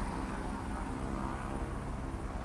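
Steady low outdoor background rumble with a faint, thin high whine over it.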